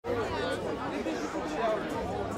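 Several voices talking in the background, unclear chatter over a low steady hum.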